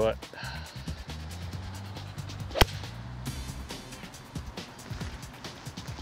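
One sharp crack of a seven iron striking a golf ball off a tee, a little under three seconds in, over background music.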